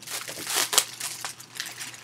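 Packaging crinkling and rustling in irregular bursts as a parcel is handled and opened, loudest just before a second in.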